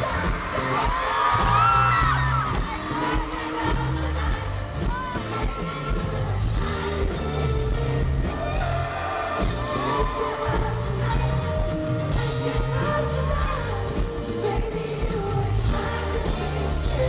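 Live pop band in an arena, recorded from the audience: a male singer with acoustic guitar over a steady bass line, with the crowd audible underneath.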